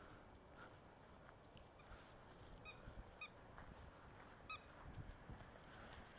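Near silence, broken by three faint, short calls: two about half a second apart near the middle and one more about a second later.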